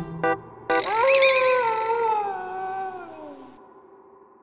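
A few short music notes, then a single long wolf howl that rises, wavers briefly, then slowly falls in pitch and fades away.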